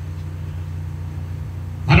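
A steady low hum in a pause between a man's words, with the speech starting again right at the end.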